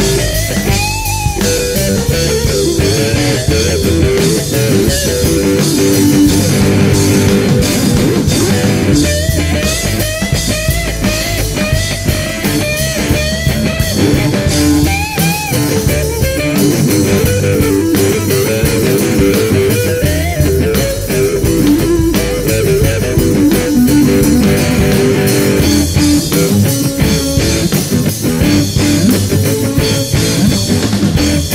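A live rock band plays an instrumental passage: an electric guitar lead with bent and wavering notes over bass and drum kit.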